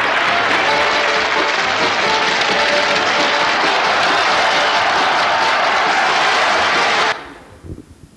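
Steady applause from a large crowd, with faint music under it, greeting the announced result of a vote. It cuts off suddenly about seven seconds in.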